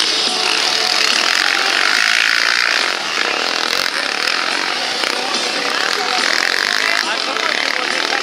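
Several racing quad bikes' engines revving hard as the quads race through a dirt-track bend, a loud, continuous, rising and falling buzz of overlapping motors.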